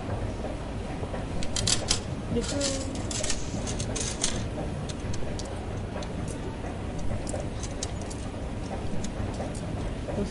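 Train station ambience: a steady low rumble with indistinct voices, and a flurry of sharp clicks and clatter from about one and a half to four and a half seconds in, with scattered lighter clicks after.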